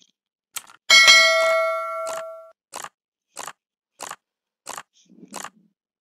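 Subscribe-button sound effect: a mouse click, then a bright bell ding that rings on for about a second and a half. Under it runs an even countdown-timer ticking, about three ticks every two seconds.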